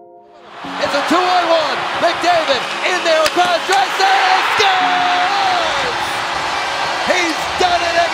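Hockey arena crowd cheering loudly during play, with scattered sharp clacks of sticks and puck. It comes in suddenly about half a second in.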